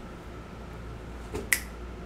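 A single finger snap about one and a half seconds in.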